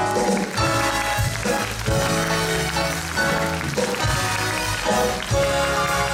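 Stage-musical band music: sustained chords over a steady bass, with accented chord hits about once a second.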